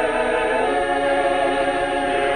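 Mixed choir of women's and men's voices singing, holding long sustained chords that shift to a new chord about half a second in.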